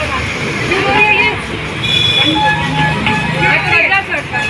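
Young children's high voices calling out and squealing as they run, over a steady hum of street noise.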